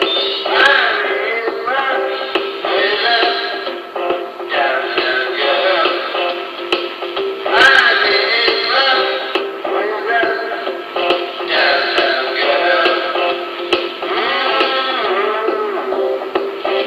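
A rock song plays: a voice sings in phrases of a few seconds over the band's accompaniment.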